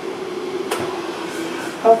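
A steady low hum with a single sharp click about two-thirds of a second in, as a metal kettle is picked up off the stove.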